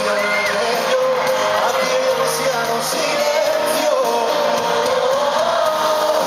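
Live pop song: a male lead vocal sings over a full band with electric guitar, heard with the reverberation of a large arena from the audience.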